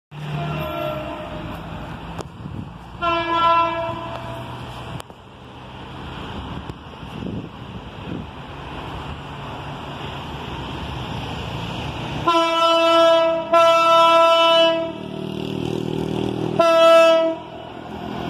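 Diesel locomotive's air horn sounding a series of steady chord blasts as the train approaches: one fading at the start, a short blast about three seconds in, two long blasts after about twelve seconds and a short one near the end. A low rumble from the train builds in the last few seconds.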